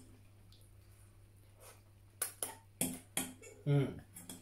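Quiet room tone, then from about two seconds in a handful of short sharp clicks and taps from eating noodles with a fork at a bowl, followed by a brief hummed "mm".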